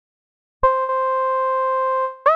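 Dead Duck DJX10 software synthesizer preset sounding one steady, sustained note. It starts abruptly about half a second in, after silence, and holds at an even pitch and level.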